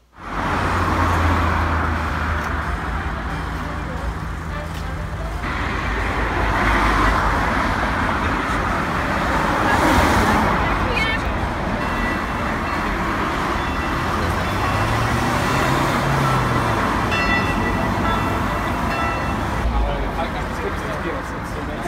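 City street traffic: a steady rush of cars passing on the road, with one vehicle's engine tone rising and falling about three quarters of the way through.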